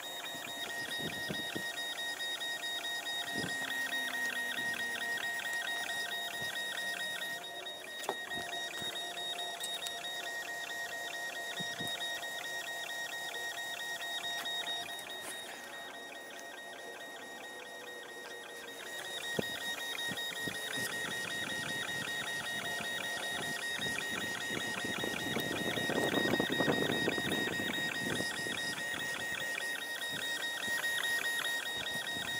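Longer Ray5 10-watt diode laser engraver's stepper motors whining as the gantry moves the laser head back and forth over birch plywood during an engrave-and-cut job. A steady high whine with a fast, even buzzing pulse that drops quieter for a few seconds in the middle.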